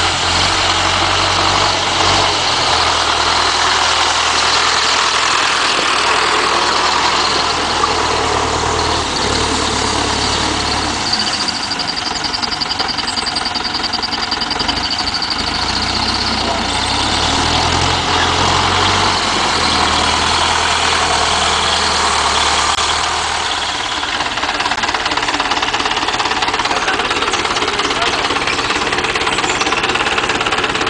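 Engine of a small four-wheel-drive tractor running steadily, its pitch changing twice along the way. A thin high tone sounds over it for about five seconds around the middle.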